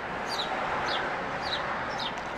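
A bird chirping: short, high, falling chirps repeated about every half second, over a steady background hiss.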